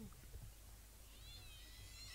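Near-silent bush ambience. About halfway through, a faint, high-pitched, drawn-out animal call begins.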